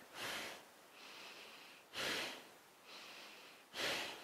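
A woman's rhythmic pumping breath during fast breath-paced exercise: louder breaths alternate with softer ones, a pair about every two seconds, each breath matched to moving between a squat and a forward fold.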